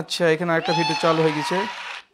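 A person's voice making one loud, drawn-out nonverbal sound, steady in pitch with a few short breaks, that cuts off suddenly near the end.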